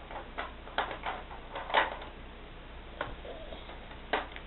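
Crayons scratching and tapping on paper on a tabletop as children color: a few irregular short strokes, the loudest about two seconds in.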